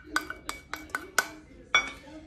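A utensil clinking against a stainless steel mixing bowl: a quick, irregular series of sharp metallic clinks, some ringing briefly, as flour is added to the minced meat.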